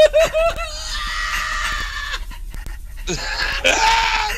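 A man laughing hysterically. A quick run of 'ha-ha' bursts opens it, then a long breathy, high squeal of laughter is held for over a second. Another loud breathy outburst of laughter comes near the end.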